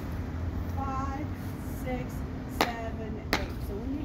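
Two sharp smacks about two-thirds of a second apart, a little past halfway, over a steady low hum, with a few short vocal sounds from a woman before them.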